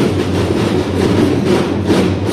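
Children's drum band playing a loud, sustained drum roll, with a harder stroke near the end.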